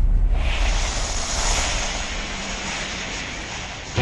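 A sound effect at the start of a hip hop track: a broad rushing noise, like a jet passing or a gust of wind, that swells about half a second in and then fades gradually, cut off by the beat at the end.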